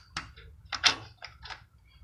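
Plastic air filter case being handled and fitted onto a small engine's carburettor: a few sharp clicks and knocks, the loudest about a second in.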